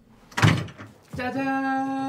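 A door thumps open about half a second in; about half a second later one long, steady held note begins and holds without wavering.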